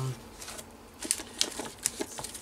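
Light handling noise on a tabletop: faint rustle with a few sharp little taps and clicks in the second half, as hands move cardboard strips and a plastic photo sleeve.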